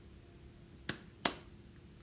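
Two short, sharp clicks about a third of a second apart, a little under a second in, the second louder, over a faint steady hum of room tone.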